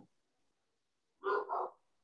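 A dog barking twice in quick succession, about a second in, over otherwise near silence on the call audio.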